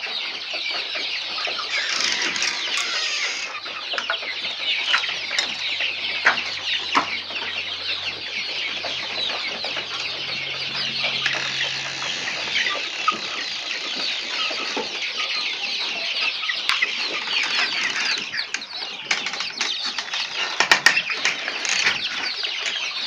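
A flock of hens and young chicks, the chicks peeping busily without pause and the hens clucking. A few sharp clicks come near the end.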